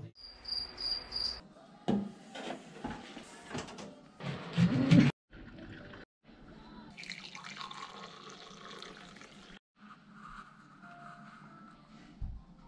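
Water running from a kitchen tap into a sink for a couple of seconds, an even hiss that cuts off suddenly. Before it come louder, brief voice-like sounds and a pulsing high beep.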